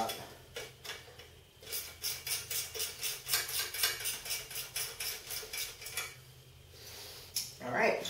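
A 10 mm ratcheting wrench clicking as it snugs up a nut on a bolt, a steady run of sharp metallic clicks at about three to four a second that stops near the end.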